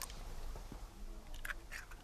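An egg being cracked and pulled open over a wooden bowl: a short crack of the shell right at the start, then a few faint clicks of shell and fingers about a second and a half in.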